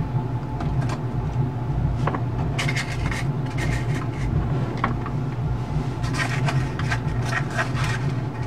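Hands handling small plastic toy figures and a little cloth backpack on a tabletop: rustling, rubbing and light clicks that come in two spells, over a steady low hum.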